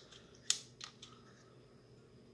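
A few sharp clicks and knocks from a pneumatic belt sander's composite housing being handled and turned over in the hands. The loudest click comes about half a second in, and two fainter ones follow.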